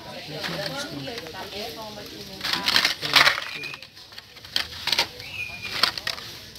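Hot Wheels blister-card packages rustling and clattering against each other as they are handled and shuffled, loudest in a burst between about two and a half and three and a half seconds in.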